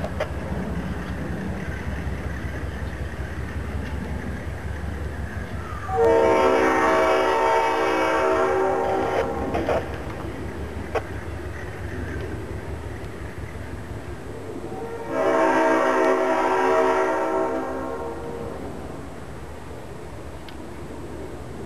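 GE C39-8 diesel locomotive's air horn sounding two long blasts, about six and fifteen seconds in, each lasting three to four seconds. Under them the locomotive's diesel engine rumbles steadily as the train moves off.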